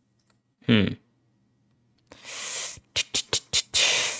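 A man's short "hmm", then idle mouth noises like beatboxing: a breathy hiss, a quick run of about five sharp clicks or pops, and another hiss.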